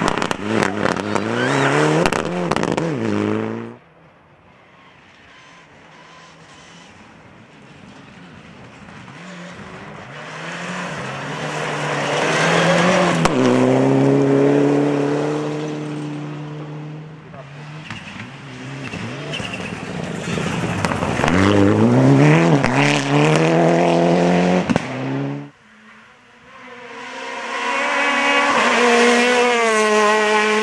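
Rally cars passing at speed in a series of separate clips: engines rev hard, rising and falling in pitch through gear changes, and one car's sound builds steadily as it approaches. The sound cuts off abruptly twice, about four seconds in and a few seconds before the end.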